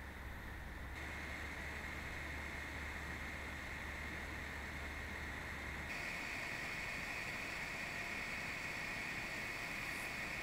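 Topton N9N mini PC's cooling fan running: a faint steady whirr with a thin whine at idle (29 dBA at 30 cm). About six seconds in it changes to the fan under a 30 W CPU load with raised BIOS power limits (40 dBA at 30 cm), a stronger, slightly higher whine with more hiss: the fan working hard against high CPU temperatures.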